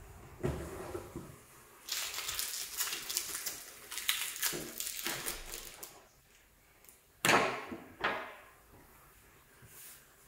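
Packaging and parts being handled: a stretch of rustling and scraping, then two sharp knocks a little under a second apart, the first the louder.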